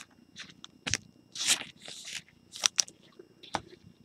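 Trading cards being handled and slid off a stack: short sliding rustles and a few sharp clicks as the card edges tap.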